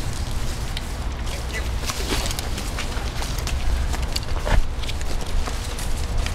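Handling noise of a backpack being put on: straps and gear rustling with scattered clicks and knocks, over a steady low rumble.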